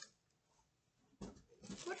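Near silence for about the first second, then a short sound and a woman starting to speak near the end.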